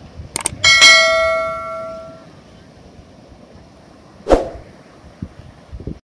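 Mouse-click sound effects followed by a bright bell ding that rings out and fades over about a second and a half: the subscribe-button notification sound. A single sharp click comes about four seconds in.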